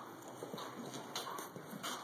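A horse cantering on soft arena dirt after a jump, with muffled hoofbeats and breathing in the stride rhythm, a beat roughly every two-thirds of a second.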